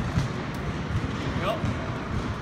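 Footsteps thudding on a rubberised indoor court floor as a badminton player steps through a net-shot drill, with short sharp taps among them, over a steady hum of a large sports hall.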